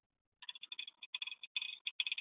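Faint, rapid, irregular ticking and crackling that starts about half a second in, as a collaborative welding robot draws its torch along a stainless joint in a dry run with no arc, the welding wire dragging a little on the part.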